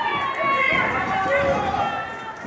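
Spectators shouting and calling out at a wrestling match, with wrestlers' feet thudding on the ring canvas.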